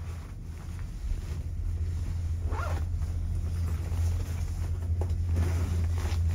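Vail Gondola One's haul rope and cabins running over the lift-tower sheaves: a steady low hum that grows louder as the tower comes closer. A brief higher-pitched sound rises out of it about two and a half seconds in.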